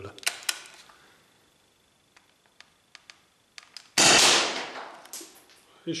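Umarex T4E HDS68 .68-calibre CO2 marker firing one shot about four seconds in: a sudden loud report that trails off over about a second and a half in a small room. A few faint clicks from handling the gun come before it.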